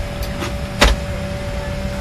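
Airliner cabin noise: a steady low rumble with a constant faint hum, broken by a sharp knock just under a second in and a few lighter clicks.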